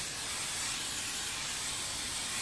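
Aerosol can of hairspray spraying in one steady, continuous hiss. The can is almost empty.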